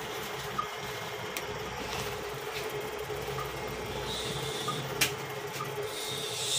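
A steady machine hum from a running motor, with a few short clicks, the sharpest about five seconds in.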